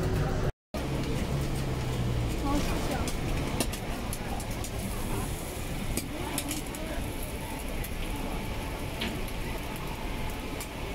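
Busy street-food market ambience: a steady hum of background noise with indistinct voices and scattered light clicks. The sound drops out completely for a moment about half a second in.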